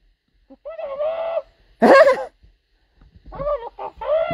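A person's voice making wordless, nasal vocal sounds in three short spells, the middle one the loudest.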